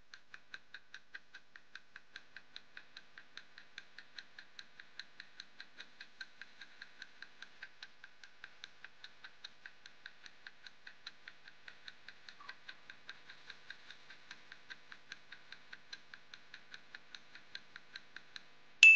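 Countdown-timer clock-ticking sound effect: faint, even ticks at about three a second, marking the time allowed to solve the puzzle.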